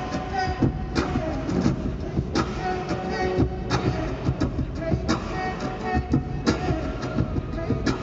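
Live beatboxing into a hand-cupped microphone: a busy rhythm of sharp percussive hits, with steady held tones running underneath.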